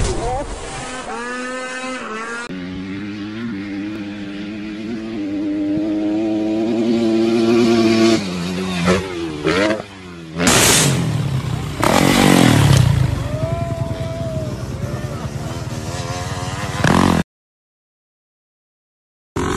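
Motorcycle engines across several short clips. One engine is held at slowly rising revs for several seconds, then louder engine and wind noise follows. People shout near the start, and the sound cuts out briefly near the end.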